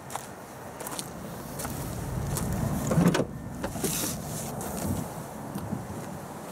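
Vauxhall Zafira tailgate being opened: a few clicks and knocks from the latch and lid, the loudest about three seconds in.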